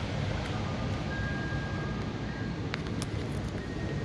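Paper brochure pages being handled and turned over a steady background hiss, with two light clicks near the end.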